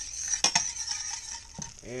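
Butter sizzling as it melts in a stainless steel pan while a metal spatula stirs it, with a couple of sharp clinks of the spatula against the pan about half a second in.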